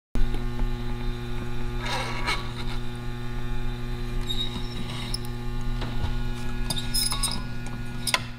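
Steady electrical mains hum from a Standard Electric Time Company laboratory power-supply panel, with a few light clicks and scrapes as its dial knobs are turned.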